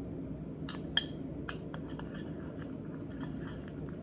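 Metal spoon clinking and scraping against a white ceramic bowl while a thick paste is stirred: a few sharp clinks, the loudest about a second in, then lighter ticks, over a steady low room hum.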